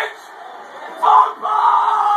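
Men yelling in celebration: a loud shout about a second in, then one long drawn-out yell.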